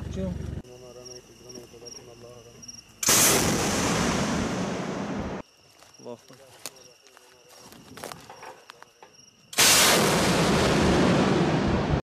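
Two Grad rocket launches. Each begins with a sudden loud rushing roar lasting about two seconds, the first a little after three seconds in and the second about ten seconds in.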